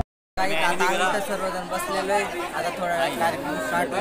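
A young man talking close to the phone's microphone over the chatter of a seated crowd of students; the sound cuts in after a brief silent gap at the start.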